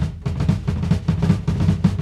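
Acoustic drum kit played fast, a quick, even run of strokes on the drums.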